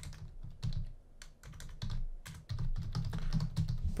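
Typing on a computer keyboard: a quick, irregular run of key clicks, with a short pause about a second in.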